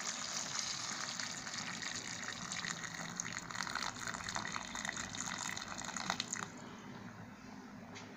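Water poured in a steady stream into a cooking pot of chicken and vegetables, adding the cooking liquid; the pouring stops about six and a half seconds in.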